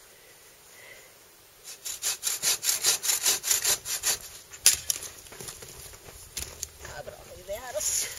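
Bow saw cutting through a branch for firewood: rasping push-and-pull strokes at about four a second, starting a little under two seconds in and loudest over the next three seconds, with one sharp knock about halfway, then continuing more softly.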